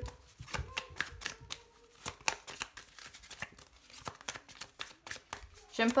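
A deck of oracle cards being shuffled by hand: an irregular run of quick soft card snaps and slaps as the halves of the deck are worked together.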